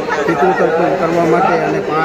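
A man's voice speaking continuously into news microphones: only speech.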